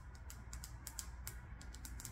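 Fingers and long nails handling a plastic embroidery hoop, giving a quick, irregular run of light clicks, about a dozen in two seconds.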